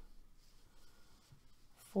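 Faint soft rustling of yarn being pulled through loops with a crochet hook while stitching.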